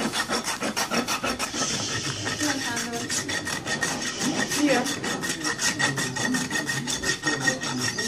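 Farrier's rasp filing a horse's hoof, in rapid, even back-and-forth strokes.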